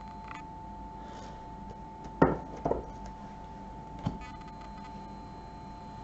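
A tarot deck set down on a table: three short light knocks, the first and loudest about two seconds in and the last about four seconds in, over a faint steady high-pitched tone.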